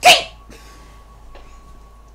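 A woman's single sharp sneeze, then a faint steady hum.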